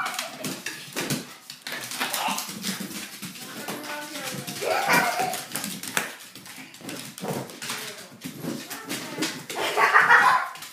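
A pug chasing a balloon across a hardwood floor: a run of short knocks and scuffles from its paws and the balloon being bumped, with the dog's own vocal sounds now and then.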